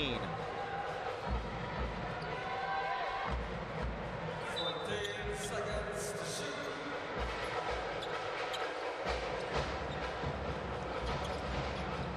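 A basketball being dribbled on a hardwood court, deep bounces about once a second, over the steady murmur of an arena crowd.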